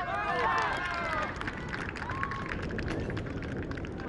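Several men shouting during a goalmouth scramble in a football match. The shouts are followed by scattered, irregular handclapping from a small number of people.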